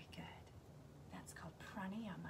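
A woman's soft, half-whispered voice speaking a few short phrases.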